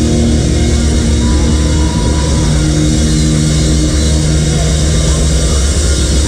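Live doom metal band holding one low distorted chord on guitars and bass, ringing on steadily without drums.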